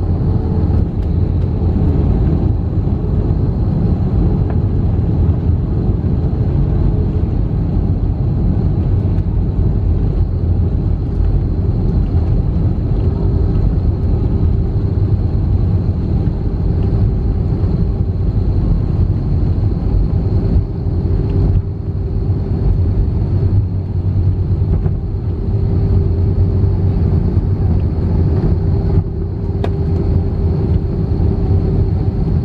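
Airbus A321 landing rollout heard inside the cabin: a loud, steady rumble of the wheels on the runway and the engines, with a steady engine tone that drops slightly in pitch about midway.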